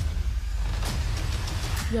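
Film-trailer sound design: a sharp hit, then a deep rumble under a rushing hiss, with a short spoken "yo" at the very end.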